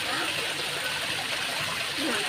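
Water running steadily down an artificial rock grotto into a pool: a continuous, even splashing hiss.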